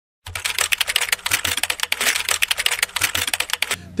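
Rapid keyboard typing sound effect, a dense run of clicks that starts just after the beginning and stops shortly before the end.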